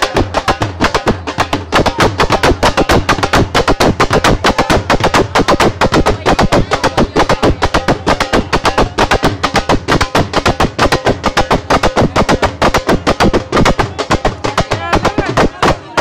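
Loud, fast drumming at many strokes a second, mixed with music and voices.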